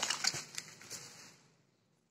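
Bubble wrap crinkling and crackling as a phone is slid out of it, a few sharp crackles that fade out after about a second.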